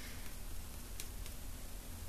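A small hand tool tapping lightly on a stiff clay mug handle to bend it into a curve, a few faint ticks about a second in, over a steady low hum.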